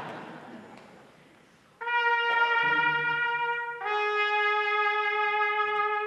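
Solo trumpet holding two long, steady notes, the second a little lower than the first, fading away near the end. Before the first note, about two seconds in, the audience's laughter dies down.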